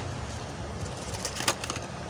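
A plastic cube package being opened and a 2x2 puzzle cube taken out by hand: a cluster of small sharp clicks and rustles in the second half, over a steady fan hum.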